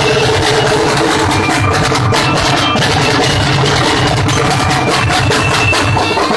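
Marching drum and lyre band playing: rapid snare strokes and booming bass drums, with short high notes from bell lyres sounding over them.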